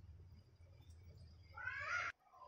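A single short meow near the end, rising and falling in pitch, over faint room tone.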